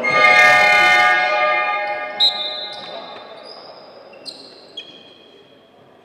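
Basketball arena horn sounding loudly for about a second, its tone ringing on in the hall and fading over the next two seconds, followed by a few short high squeaks.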